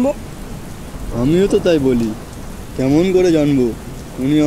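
Steady rain, with a voice making two drawn-out vocal sounds that rise and fall in pitch, each lasting about a second.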